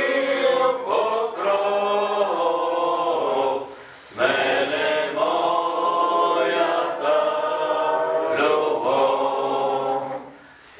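A group of voices singing a slow hymn in long, held phrases, with a short break between phrases about four seconds in.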